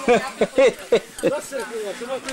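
Voices talking: speech only, with no other sound standing out.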